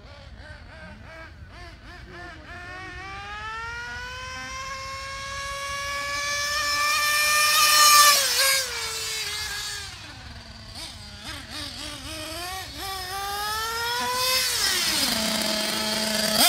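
Small nitro engine of a 1/8-scale GT on-road RC car, accelerating with a rising whine that peaks as the car passes close about eight seconds in. The pitch then drops away, climbs again on a second run, and falls as the car slows near the end.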